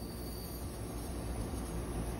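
Steady faint hiss of liquid refrigerant flowing from the bottle through the R-410A gauge manifold and hoses into the evacuated condensing unit during charging, over a low rumble.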